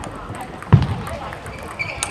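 Table tennis rally: a celluloid ping-pong ball clicking off the bats and the table, with one louder knock about three-quarters of a second in.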